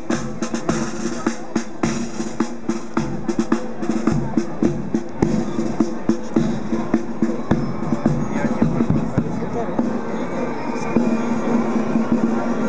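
Parade marching drums: snare drums and bass drum beating a steady march rhythm, with sustained band music underneath that grows louder near the end.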